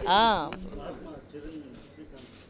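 Speech: one loud word drawn out with a rising then falling pitch, like a coo, in the first half-second, then quieter talk.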